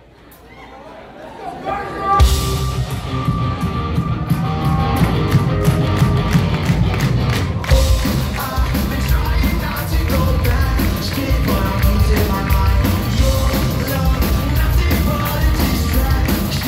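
A live heavy rock band starts a song: about two seconds of quieter build-up, then drums, distorted guitars and bass come in loud all at once, with a voice singing over them.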